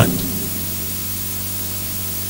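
Steady hiss with a low electrical hum underneath: the background noise of the microphone and recording chain, heard in a pause between words.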